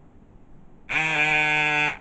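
A loud, steady buzzing tone, about a second long, that starts and stops abruptly.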